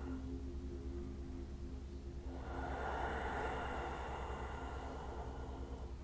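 Faint background music of soft sustained tones that fade out about two seconds in, over a steady low hum; a soft hiss comes in at about the same time.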